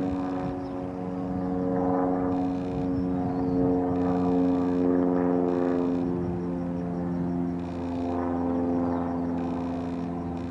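A steady engine drone with several held tones, slowly swelling and easing in loudness.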